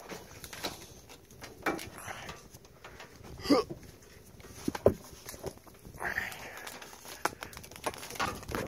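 Scattered clicks, knocks and rustles of a furnace pigtail cable and metal junction box being handled, the sharpest click just before five seconds in. A short voice-like sound comes about three and a half seconds in.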